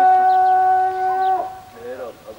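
A rooster crowing: one long, steady held note that ends about one and a half seconds in.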